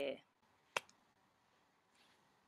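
The last syllable of a woman's speech, then a single sharp click a little under a second in, over faint background hiss.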